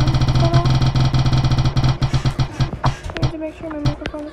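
Spin-the-wheel phone app ticking rapidly as its wheel spins, the ticks spreading out as it slows and stopping about three seconds in, over a steady low tone.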